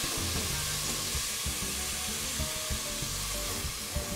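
Diced onions sizzling steadily in hot olive oil and butter in a stainless steel pot, stirred with a utensil that knocks against the pot a few times.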